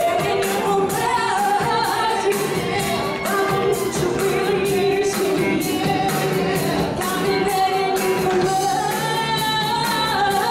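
Live band playing beach music with a lead singer and a steady drum beat.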